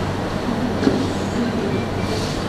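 Steady rushing room noise with a constant low electrical hum, picked up by an open microphone; a faint tick just before the second.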